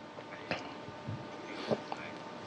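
Faint, indistinct voice sounds and a few soft short noises over steady room tone, in a brief pause of the interpreted speech.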